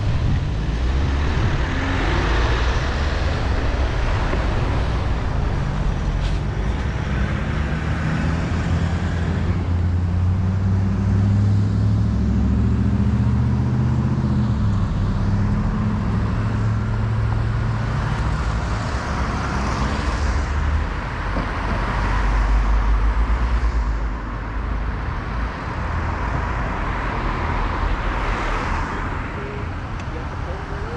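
Road traffic: cars passing close by on the street, with a heavier engine rumble from a passing vehicle near the middle and again a little later.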